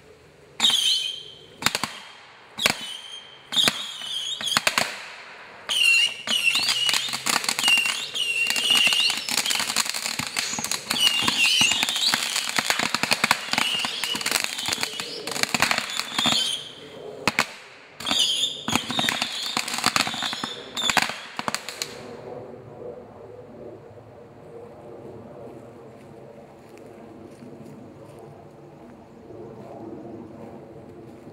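Fireworks packed inside a desktop computer tower going off: a few separate bursts with a high whistle in the first seconds, then a long dense run of rapid bangs and crackling with whistles lasting about fifteen seconds. After that it drops to a quieter steady sound as a firework keeps burning with bright sparks.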